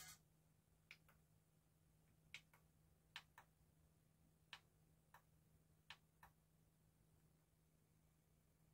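Faint clicks of the Fostex CR500 CD recorder's front-panel transport buttons being pressed and released, mostly in close pairs, about five presses in the first six seconds. A low steady hum lies underneath.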